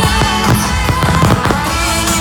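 Fireworks going off in a dense barrage: many sharp bangs and crackles in quick succession, heard over loud music.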